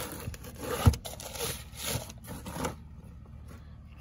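Crumpled newspaper packing and cardboard rustling and scraping as a glass jar is pulled out of a divided bottle box, with one sharp knock about a second in. The rustling dies down about three seconds in.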